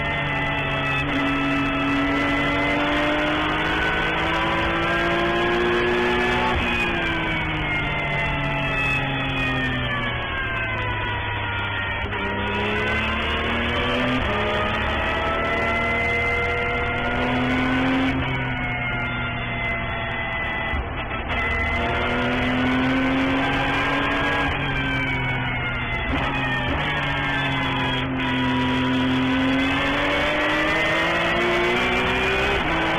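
Porsche 911 GT3 Cup's flat-six engine heard from inside the cockpit at racing speed. Its pitch climbs in long sweeps of several seconds and then falls away as the car accelerates and slows through the corners.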